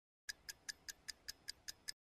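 Clock-tick sound effect keeping time with an on-screen countdown timer: short, even ticks about five a second, starting a moment in.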